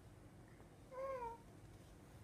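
A baby's single short vocal sound about a second in, lasting about half a second, with a pitch that wavers up and down.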